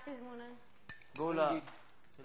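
Brief wordless voice sounds, with a single sharp clink a little under a second in.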